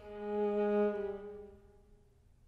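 A viola playing one long, low bowed note that swells in and then fades away over about two seconds, with quiet before and after.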